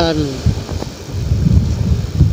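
Low, uneven wind rumble on the microphone over the running of a Honda CB150R's single-cylinder engine while the motorcycle cruises. A voice trails off at the very start.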